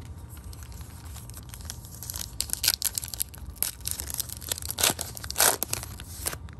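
Foil trading-card pack wrapper being crinkled and torn open by hand, in irregular crackling, ripping bursts starting about two seconds in.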